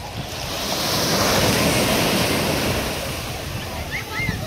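Ocean wave breaking and washing up the beach, a rushing surge that swells to a peak about a second and a half in and then slowly fades.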